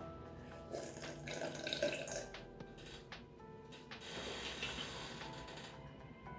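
Quiet background music with faint drinking sounds as someone sips from a plastic cup.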